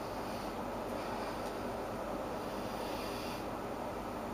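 A steady low hum with an even hiss over it, with no distinct event.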